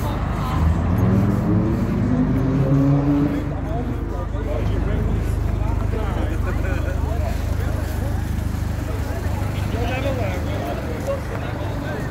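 VW Scirocco R's turbocharged four-cylinder engine revving, its pitch rising for about three seconds, then running on with a steady low rumble as the car moves past.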